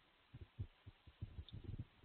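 Near silence: room tone with a few faint, irregular low thuds.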